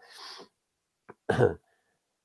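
A man clearing his throat: a breathy rasp at the start, then one short voiced clearing sound about a second and a half in.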